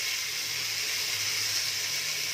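Marinated chicken sizzling steadily in hot oil in an aluminium pressure cooker, just after it has been tipped in.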